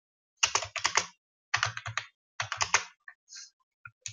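Computer keyboard typing: three quick bursts of rapid keystrokes, then a few single key presses near the end.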